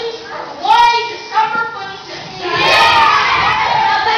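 Children's voices: a few short spoken phrases, then about two and a half seconds in many children shout together, the loudest part.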